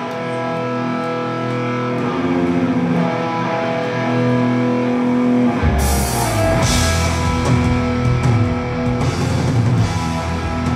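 Death metal band playing live: the song opens on distorted electric guitars holding slow, sustained notes, and about six seconds in the drums and bass come in with a cymbal crash and the full band plays on.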